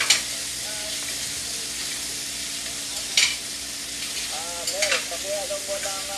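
Steady hissing noise throughout, with a brief crackle near the start and another about three seconds in, and faint distant voice fragments between four and five seconds in.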